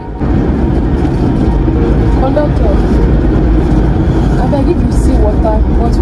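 Loud, steady rumble of a passenger bus in motion, engine and road noise heard from inside the cabin, cutting in suddenly just after the start. Faint voices sound under it.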